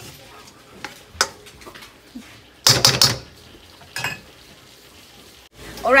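Spatula stirring and scraping julienned zucchini and yellow squash around a stainless steel wok, over a faint sizzle of the frying vegetables. There are a few sharp clinks of the spatula on the pan, and a louder burst of scraping about two and a half seconds in. The sound cuts off abruptly just before the end.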